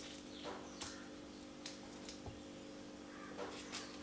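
Faint soft taps and rustles of eggs being pressed into braided bread dough on parchment paper, a few scattered light ticks over a steady low hum.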